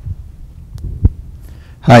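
Low thumps of a handheld microphone being handled: a soft bump at the start and a sharper one about a second in, over a low hum. Near the end a voice says "Hi" into it.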